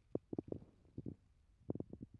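Soft, low handling knocks and bumps in three quick clusters, about ten in all, as a laptop in a plastic sleeve is lifted and handled.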